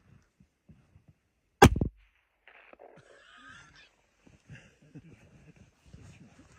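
A single sharp clack or knock about a second and a half in, with a brief low ring after it, followed by faint rustling and handling noise.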